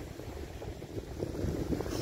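Wind buffeting the microphone, a low uneven rumble, over a faint wash of surf.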